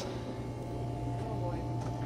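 Steady low electrical hum, with a faint thin whine coming in about a second in.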